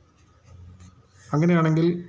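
Faint scratching of a marker pen drawing lines on paper, with a man's voice starting about a second and a half in.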